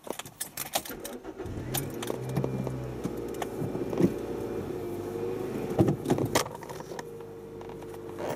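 Keys jangling and clicking in the ignition, then the 1.3-litre VVT-i engine of a 2000 Toyota Yaris starts after about a second and a half and settles into a steady idle. A few sharp knocks and clicks from inside the car come over the idle.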